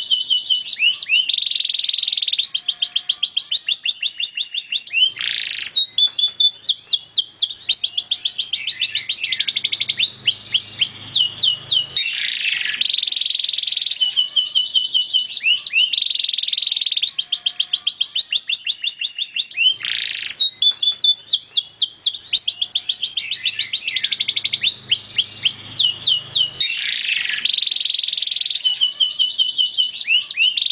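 Male canary singing a continuous song of fast trills, rolls and rising whistles, with brief pauses between phrases. The whole sequence of phrases repeats about every fifteen seconds.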